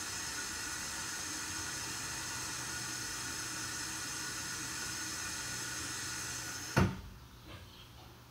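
A steady hiss that stops with a sharp click or thump nearly seven seconds in, after which it is much quieter.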